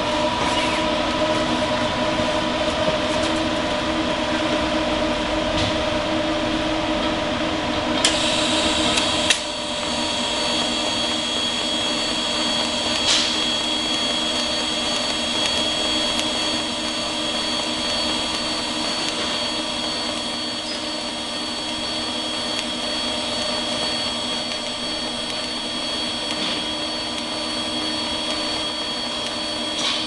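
DC pulse TIG arc from a Lincoln Power MIG 360MP, struck about eight seconds in and then burning with a steady high whine over a constant low hum. The pulser is set to two pulses per second.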